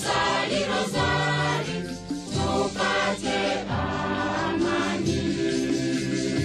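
Christian choir music: a devotional hymn with choir voices over a regular low beat.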